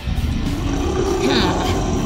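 A loud low rumble, a dramatic sound effect that starts suddenly and holds steady under a show of muscle.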